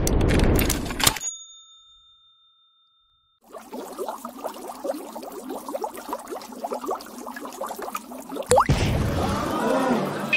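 Cartoon sound effects. A noisy whoosh opens into a steady ringing ding, followed by several seconds of rapid bubbling blips from lab flasks. Near the end a quick rising whistle leads into a small explosion-like burst.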